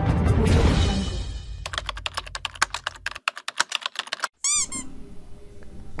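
Intro music fading out, then a quick run of typing-like clicks, about a dozen a second for a second and a half. A short squeaky warbling sound effect, its pitch bending up and down a few times, follows after a brief silence.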